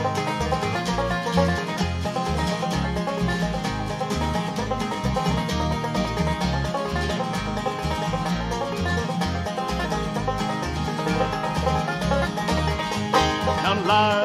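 Instrumental break in a folk song: plucked acoustic strings, banjo-like, picking the tune quickly over a steady bass beat. A singing voice comes back in at the very end.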